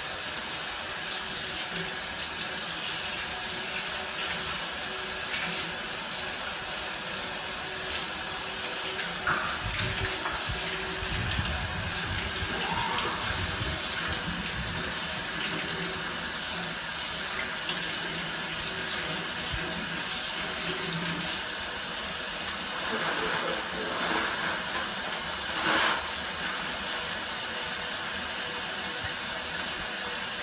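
Water running from a faucet into a stainless-steel sink as hands are washed under the stream, steady throughout, with a few brief louder moments.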